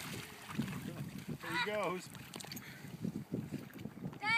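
Water splashing and sloshing as a Black Mouth Cur paddles out into a lake and a person wades through the shallows. A short, high vocal cry comes about a second and a half in.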